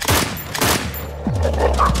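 Over-and-under shotgun firing two shots, a little over half a second apart.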